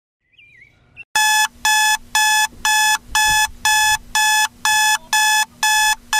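Electronic alarm going off to wake a sleeper: a steady run of identical shrill beeps, two a second, starting about a second in.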